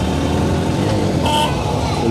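Road traffic engines, led by a loaded three-wheeler auto-rickshaw running close by as it drives through the muddy, waterlogged road. A brief higher tone sounds a little past halfway.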